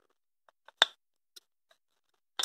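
A few small, sharp clicks from a thin steel oil-control ring rail being started by hand into the bottom ring groove of a piston and wound around it; the loudest click comes a little under a second in.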